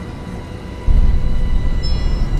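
Deep low rumble that jumps suddenly much louder about a second in and stays loud, a trailer-style sound-design hit.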